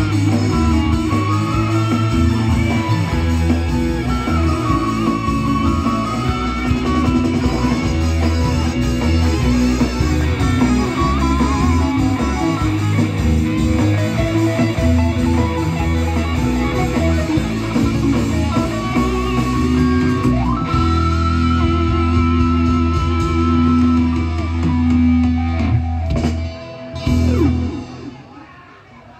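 Live band music with electric guitars to the fore over bass and drums. The music drops off in the last couple of seconds after a short final flourish.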